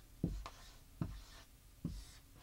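Dry-erase marker writing on a whiteboard: three short strokes as a word is written.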